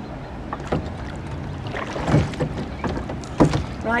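Oars of a small rowing boat being worked through the water, a series of irregular splashes and knocks over a steady low background, loudest about two seconds in and again near the end.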